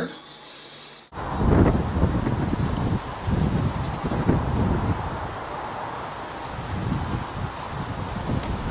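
A quiet indoor room tone for about a second, then wind buffets the camera's microphone in uneven gusts, with a rumbling low end.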